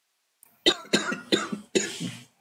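A person coughing four times in quick succession, each cough sharp and loud, starting just over half a second in.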